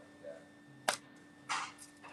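A single sharp click a little before the middle, then a short soft hiss about three-quarters through, over a faint steady hum.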